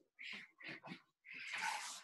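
Handheld eraser wiping a whiteboard: several short, faint rubbing strokes, with a longer stroke near the end.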